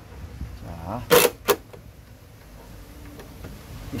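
Cordless drill-driver on the self-tapping screws that hold a steel reinforcement plate over a car's door-check mounting panel: two sharp clicks about a third of a second apart as the screws are checked for tightness.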